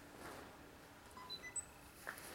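Quiet room tone with a quick run of short, high pinging tones at several different pitches a little past halfway, like a small chime or electronic beep.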